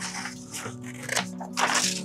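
Scissors snipping through a sheet of printer paper, several short crisp cuts, over soft background music.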